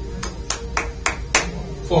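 A person clapping hands: five quick, sharp claps at an even pace of about three a second.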